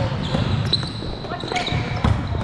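Indoor volleyball play on a wooden court: the ball being struck, sneakers squeaking briefly several times, and footfalls, with voices in the background.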